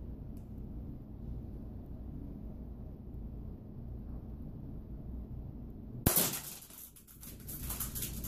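K'nex TR-8 rubber-band shotgun firing a load of orange K'nex micro connectors about six seconds in: a sharp snap, then a brief clatter of the small plastic pieces scattering. Before the shot there is only a low room hum.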